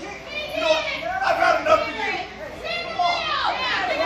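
Children in the audience shouting and yelling excitedly, several high voices overlapping, loudest in the second half.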